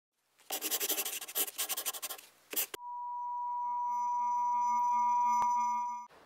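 A rapid rattling noise for about two seconds, then a steady electronic beep tone that swells slowly and fades out just before the end, with a sharp click shortly before it fades.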